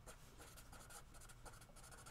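Faint scratching of a pen writing on paper, in short irregular strokes, as a handwritten heading is put down.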